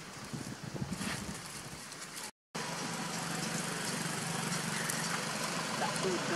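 A motor running with a steady low hum after a brief dropout to silence about two seconds in. Before the dropout there is general outdoor background noise with a few faint clicks.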